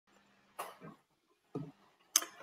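Two faint, short throat-clearing sounds from a person, about a second apart.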